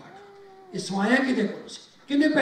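A man's voice through a microphone and loudspeakers, speaking loudly for about a second. It is preceded by a faint, brief held tone that falls slightly in pitch.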